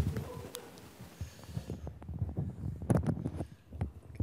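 A clip-on microphone being handled and repositioned on the wearer's clothing: irregular low knocks and scrapes on the mic, with a few sharper clicks.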